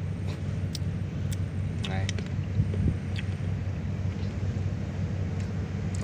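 Low, steady drone of a large cargo ship's engine passing on the river, with a few faint scattered ticks.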